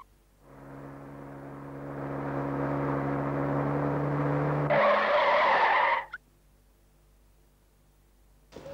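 A dramatic synthesizer swell from the soundtrack score: a low sustained drone of steady tones that grows louder for about four seconds. It ends in a loud, bright hissing burst that cuts off suddenly about six seconds in, followed by near silence.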